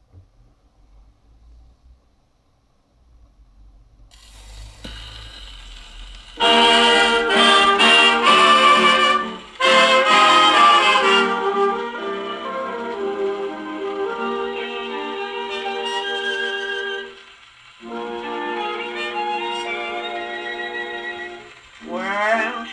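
78 rpm shellac record playing on an HMV 171 acoustic gramophone: a faint low rumble and surface hiss at first, then the 1932 dance band's introduction comes in loud about six seconds in. The playing turns softer after about twelve seconds, with a short break near seventeen seconds.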